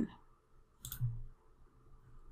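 A single computer mouse click about a second in, with a soft low thud just after it.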